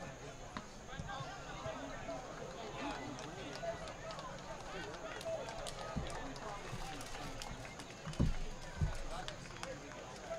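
Distant, indistinct shouts and calls of players and spectators across an outdoor soccer field. Two dull thumps come near the end, about half a second apart.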